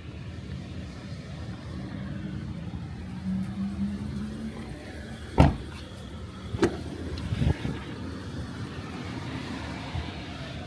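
Toyota Corolla Altis doors being shut and opened: one heavy door thump about five and a half seconds in, then two lighter clunks over the next two seconds, over a steady low hum.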